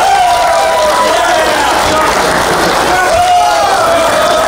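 Wrestling crowd shouting, several fans' voices holding long drawn-out calls that overlap.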